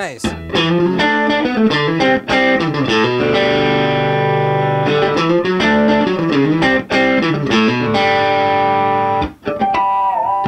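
1961 Fender Stratocaster electric guitar played through a 1964 Vox AC10 valve amp on its middle single-coil pickup: a run of chords and single notes with some bent notes, and short breaks about seven and nine seconds in.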